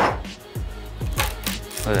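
A single sharp knock of a wooden mallet striking the bark edge of a walnut slab, then background music with a regular beat.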